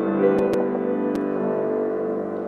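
Grand piano playing slow sustained chords, the closing bars of a piece, with a few faint clicks.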